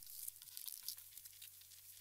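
Near silence: a faint low steady hum with faint scattered crackles.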